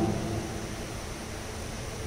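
Steady background hiss and low hum of room noise, with no distinct event; a voice's last echo fades away in the first half second.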